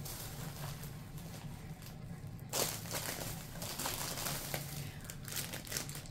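Plastic crinkling and rustling as items are handled, getting louder about two and a half seconds in.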